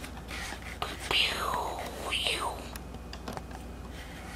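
A person whispering in two short bursts, about a second and about two seconds in, over a steady low room hum.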